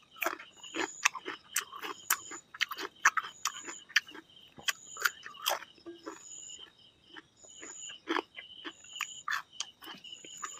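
Close-miked chewing and lip-smacking of rice and fried fish eaten by hand, a quick irregular run of wet mouth clicks. Behind it a short high chirp repeats about once a second.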